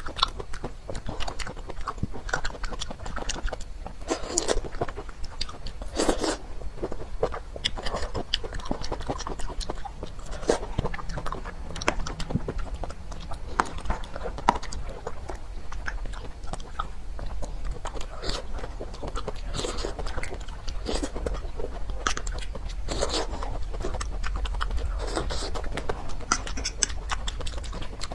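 Close-miked chewing and biting of soft jelly candy: irregular wet mouth clicks, smacks and squishes that carry on throughout.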